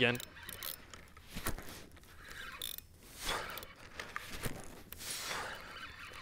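Spinning reel and rod under the pull of a large hooked seven-gill shark: scattered mechanical clicks and scraping, with a few short swells of rubbing noise.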